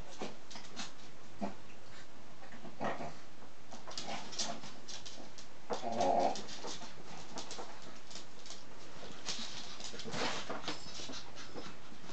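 Shih Tzu puppies whimpering and yelping as they play, with one louder drawn-out cry about six seconds in and more short cries near the end, over scattered small clicks and scuffles.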